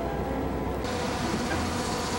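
Railway noise: a train running at a station, a steady rumble with hiss, taking over from background music that fades out in the first second.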